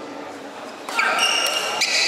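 Badminton rally: a sharp racket hit on the shuttle about a second in, followed by loud, high-pitched squeaks of court shoes on the floor.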